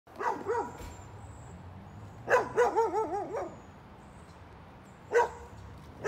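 Dog barking in alarm at a grizzly bear in the yard. The barks come in three bursts: a couple near the start, a quick run of about five in the middle, and a single bark near the end.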